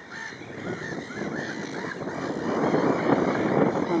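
A flock of black-headed gulls and jackdaws calling over one another, short harsh calls several a second. In the second half a rushing noise rises and grows louder beneath them.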